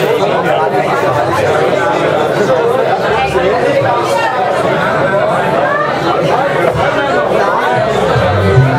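Crowd chatter: many voices talking at once among a packed bar audience, with no music playing.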